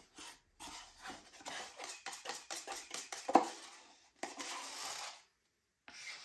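A quick, irregular run of clicks and scrapes of a tool against a paint cup, like paint being stirred and scraped out, with one sharper knock near the middle, followed by a short hissing scrape.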